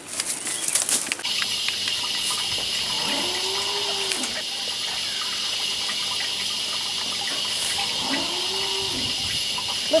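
Two drawn-out calls from cattle, each rising and falling, about five seconds apart, over a steady hiss.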